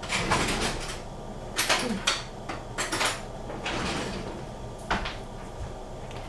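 Spoon and kitchenware clinking and scraping in a few short strokes, with a sharp knock about five seconds in, as chocolate powder is spooned into milk heating in a pot.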